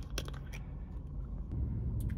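Plastic water bottle's screw cap being twisted open, with a couple of sharp clicks in the first half-second, over a low steady rumble inside the car.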